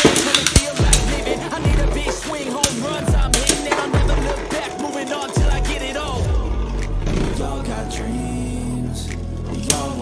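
Two Beyblade Burst spinning tops launched together from string launchers with a ripping burst at the start, then spinning and scraping around a plastic stadium, clashing with repeated sharp clicks, all under hip-hop backing music.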